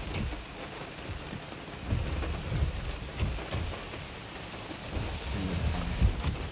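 Rain falling on a car's roof and windshield, heard from inside the cabin as a steady patter, with irregular low rumbles underneath.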